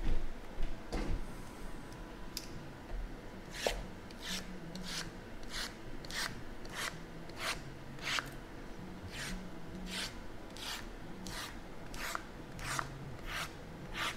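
Shrink-wrapped cardboard trading-card boxes sliding against one another as they are pulled from the bottom of a stack and set back on top: the boxes are being shuffled. A steady run of short scraping strokes, roughly two a second, starts a few seconds in.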